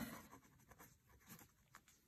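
Faint scratching of a pen writing on paper: a few short strokes as a word is finished, then near silence.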